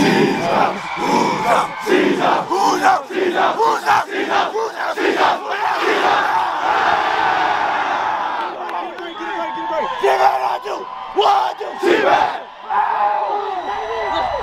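A football team huddled together, many players shouting and yelling at once in a pregame rally cry.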